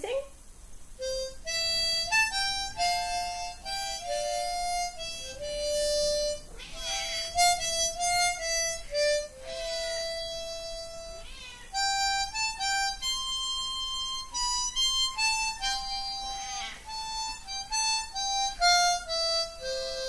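Hohner harmonica in C playing a melody of separate held notes that step up and down.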